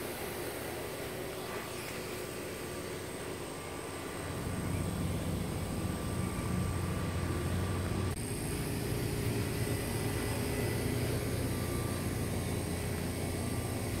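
A low, steady engine-like drone that comes in about four seconds in and gets a little louder around eight seconds.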